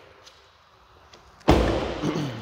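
A 2016 Hyundai Santa Fe Sport's car door shut once with a solid thud about one and a half seconds in, ringing off over about half a second.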